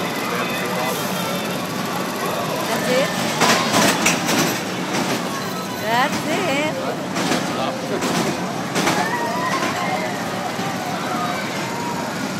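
Busy fairground din: many voices and shrieks over a steady rumble, as a small kiddie roller coaster train runs past rattling on its track. The clatter comes in bursts a few seconds in and again past the middle.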